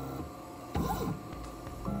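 CNC milling machine's axis motors driving a touch probe through a measuring move inside a bored hole: a short whine of about half a second, about three-quarters of a second in, rising and then falling in pitch as the axis speeds up and slows down. This is the probing cycle's second pass, the one that takes the measurement of the hole's centre.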